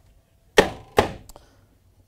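Two sharp wooden knocks about half a second apart, then a faint tick, as a wooden kitchen cabinet under the sink, with its pull-out trays and hinged doors, is pushed shut.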